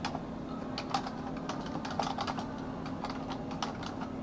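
Typing on a computer keyboard: irregular runs of keystrokes, several a second, over a steady low hum.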